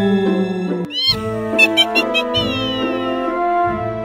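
Halloween-theme background music with sustained tones, with a cat meow sound effect about a second in, followed by short blips and falling gliding tones.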